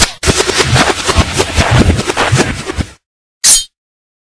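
Intro sound effect: a loud, rapid volley of sharp hits that dies away about three seconds in, then, after a short silence, one brief sharp burst.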